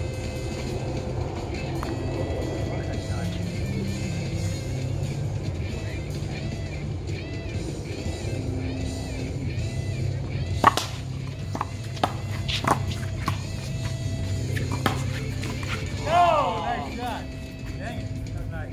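Music playing in the background, with a quick run of sharp knocks in the second half: a racquetball struck by strung racquets and hitting the concrete wall during a rally, the loudest about halfway through. A short wavering squeal follows near the end.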